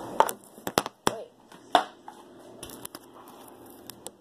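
Store-bought slime and its plastic tub handled as the slime is pulled out by hand: several sharp crackles and clicks in the first two seconds, then a few fainter clicks.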